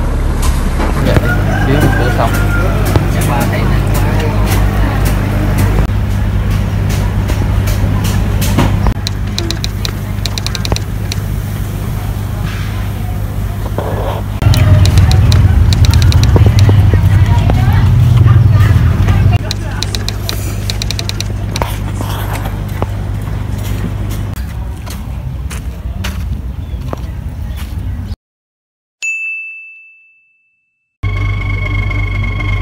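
Indistinct voices over a steady low hum, which grows louder for about five seconds in the middle. Near the end the sound cuts out and a single chime rings.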